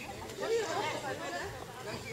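Several people chattering in the background, with no clear words.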